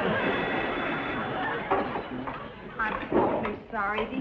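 Several people talking over one another, indistinctly, with a high wavering vocal cry near the end.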